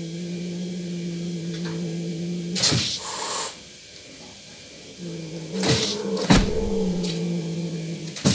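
Domestic cats in a standoff: a long, low growling yowl, cut off by a sharp hissing spit about two and a half seconds in. A second long yowl starts about five seconds in, broken by two sharp spits.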